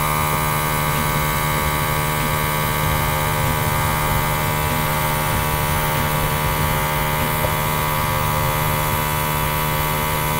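Small airbrush compressor running steadily with air hissing from the airbrush as alcohol ink is sprayed.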